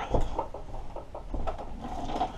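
Footsteps and light irregular knocks on a wooden plank floor, with a slightly louder knock right at the start.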